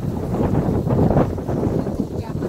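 Wind blowing across the microphone, a low gusting noise that grows louder toward the middle and then eases slightly.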